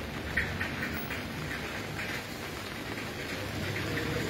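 Steady hiss of light rain falling on standing water and wet ground.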